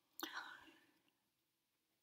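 Near silence, with one brief soft sound about a quarter of a second in that fades within half a second.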